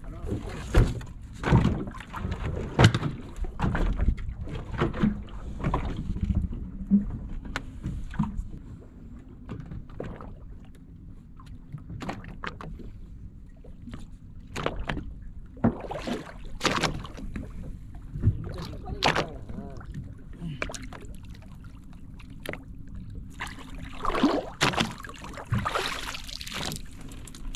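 Knocks and thumps on the deck and hull of a small fishing boat over a steady low hum. Near the end comes a louder burst of splashing and knocking as a giant trevally is lifted out of the water.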